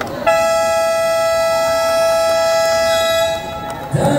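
Basketball game buzzer sounding one long, steady, loud tone for about three seconds, then cutting off sharply.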